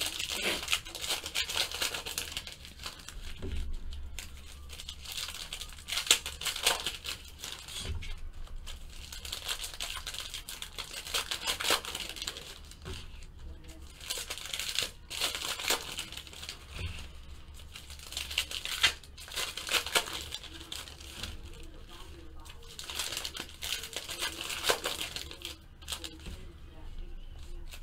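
Plastic trading-card pack wrappers crinkling and tearing in repeated bursts as packs are opened and the cards are handled.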